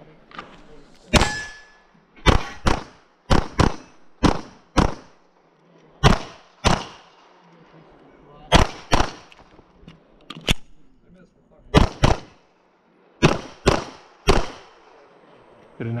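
A pistol fired in a timed course of fire, about seventeen shots, mostly in quick pairs about half a second apart, with one- to two-second gaps between pairs. Each shot has a short echo tail.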